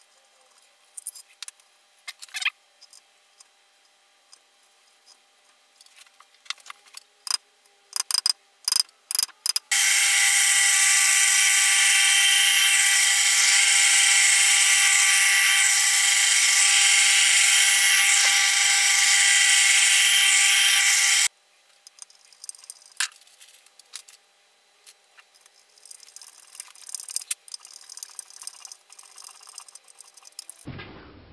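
Drill press motor running steadily for about eleven seconds, drilling string-through holes in a guitar body with a small bit. It starts and stops abruptly. Before and after it come scattered taps and clicks of hands and tools on the workpiece.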